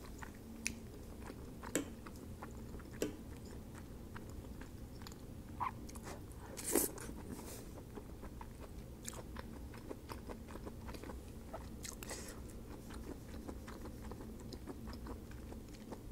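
A person chewing a mouthful of creamy truffle mafaldine pasta with the mouth closed: soft, wet chewing and small mouth clicks, with a few louder clicks, the loudest about seven seconds in.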